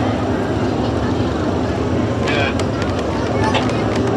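Race car engines running steadily, with voices in the background.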